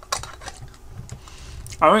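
Red metal screw lid being put onto a glass jar of chilli oil and turned: a few small clicks and scrapes, the sharpest just after the start.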